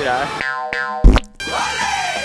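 Cartoon-style editing sound effects for an animated title card: a short springy boing-like tone, a sharp hit about a second in, then a falling pitched glide over music.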